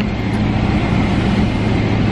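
Steady airliner cabin noise: an even, loud rush with a constant low hum underneath.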